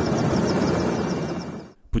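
Military helicopter running: a loud, steady rotor and engine rush with a fast regular rotor beat, heard from an open cabin door. It cuts off shortly before the end.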